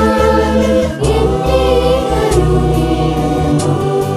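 Large mixed choir singing a Malayalam Christian song in four-part harmony, over steady held low notes.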